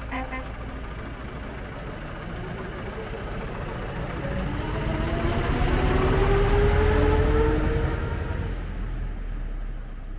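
1929 Leyland Lion bus pulling away and driving past, its engine rumbling with a whine that rises in pitch as it gathers speed. It is loudest about six to seven seconds in as it passes close, then fades as it moves off.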